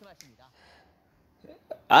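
A pause in a man's speech, filled by faint breath and mouth sounds, including a short sharp intake of breath; he starts speaking again just before the end.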